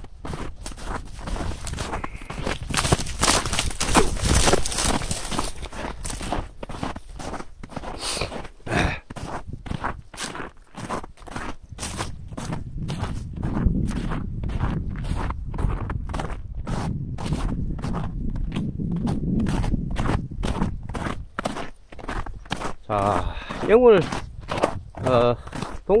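Footsteps crunching over frozen river-edge ice and gravel, at a steady walking pace of about two steps a second. There is a stretch of louder noise a few seconds in.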